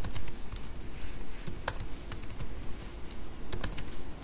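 Typing on a computer keyboard: irregular key clicks with short pauses between them, and a quicker run of keystrokes near the end.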